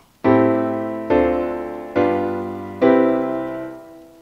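Four chords played on a keyboard, one after another at an even pace, each struck and dying away: the jazz turnaround A-minor 7, D-minor 7, G7, C-major 7 (VI–II–V–I in C major), each chord root a fifth below the last. The last chord, the tonic, fades out near the end.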